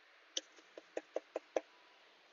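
Six light knocks on a small wooden birdhouse as it is tapped to shake off excess glitter, the last four coming quickly, about five a second.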